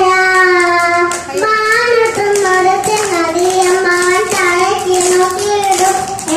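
A young girl singing a song close into a handheld microphone, holding long, steady notes one after another.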